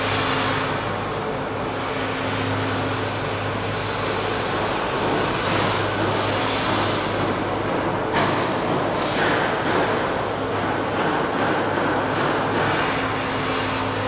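Steady machinery noise of a factory assembly hall: a constant hiss over a low hum, with a few short sharp clatters about halfway through.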